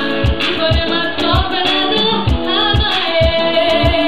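Live stage performance: a singer's voice over loud backing music with a steady kick-drum beat, nearly three beats a second, and a ticking hi-hat, played through a concert PA.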